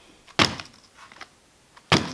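A 1/16 Traxxas Slash 4x4 VXL with its body off, dropped a few inches onto a wooden workbench twice, landing with a short thud each time about a second and a half apart. Its shocks are freshly refilled with oil, so the suspension takes the landing and the chassis does not bottom out on the table.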